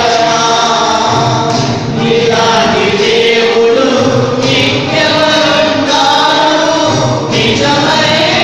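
Voices singing together in a Telugu Christian hymn, with long held notes that change every second or so.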